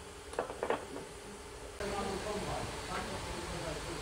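A few sharp metallic clinks from a steel rail and its bolted clamp being worked by hand, as from metal knocking on metal. A little under two seconds in the level jumps suddenly to indistinct voices over steady background noise.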